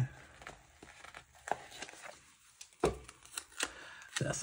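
Paper sticker sheet handled and a box sticker peeled off its backing: faint rustling with a few soft clicks and taps, the sharpest about three seconds in.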